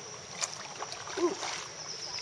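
A few light knocks of a kayak paddle against the plastic hull, with a little water movement, over a faint steady high insect buzz.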